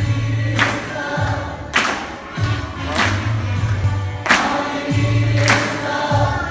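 A congregation singing a song together with instrumental accompaniment: a low bass line under the voices and a sharp beat struck about once a second.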